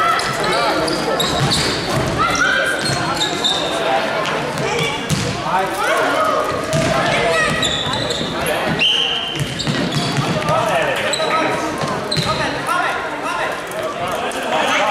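An indoor youth football game in an echoing sports hall: players' voices calling and shouting, with the knocks of the ball being kicked and bouncing on the wooden floor.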